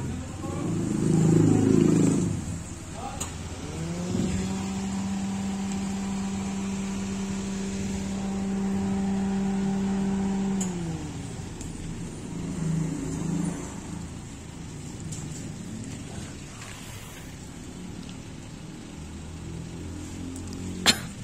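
A motor's hum comes in a few seconds in, rising in pitch, holds a steady tone for about six seconds, then winds down. Low voices are heard briefly before and after it.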